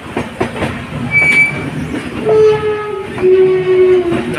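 Passenger train rolling out of a station, its wheels clattering over the rails and points, with a brief high squeal about a second in. From just past halfway a train horn sounds, held steady and then dropping to a lower pitch for its last second or so.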